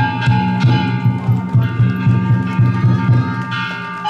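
Danjiri float music: a taiko drum beaten in a steady, quick rhythm of about three beats a second, with small hand gongs (kane) ringing over it.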